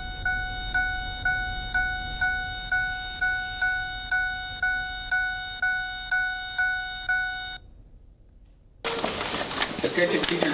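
School alarm sounding at the start of an earthquake emergency drill: a steady pitched tone that pulses about twice a second, cutting off suddenly about seven and a half seconds in. After a short hush, a louder noisy stretch of room sound begins near the end.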